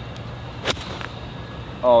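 A golfer's nine iron striking the ball in a full swing: one sharp, clean click about two-thirds of a second in.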